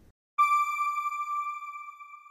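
A single high electronic chime tone from an end-card sound logo. It starts suddenly about half a second in, then holds one steady pitch while it slowly fades.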